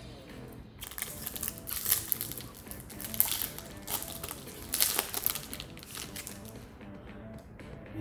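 Foil booster-pack wrapper crinkling in the hands in irregular bursts, over faint background music.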